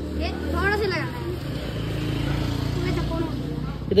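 A person's voice calling out briefly about half a second in, then softer voices over a steady low hum.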